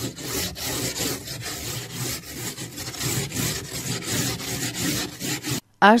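Frost being scraped off a car windshield, a quick run of rasping scrape strokes on the iced glass heard from inside the car; the scraping stops abruptly shortly before the end.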